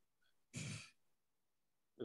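A single short, breathy exhale like a sigh, about half a second in, amid otherwise near silence.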